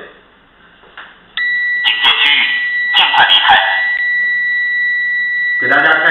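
Digital multimeter on its continuity (buzzer) range sounding one steady high beep that switches on abruptly about a second and a half in and keeps going: the alarm camera's alarm-output contacts have closed across the probes, signalling that an intrusion alarm has been triggered. Over it, a recorded voice warning plays briefly from the camera's speaker.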